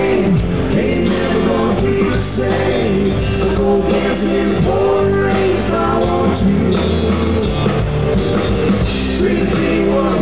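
Live country band playing through a PA, with acoustic guitar, electric guitar and electric bass.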